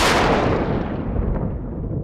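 A dramatic boom sound effect: one sudden hit, then a long rumbling decay that fades over about two seconds.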